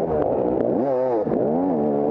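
A 250-class enduro dirt bike engine revving up and down with the throttle. Its pitch climbs about a second in, falls back, and climbs again near the end.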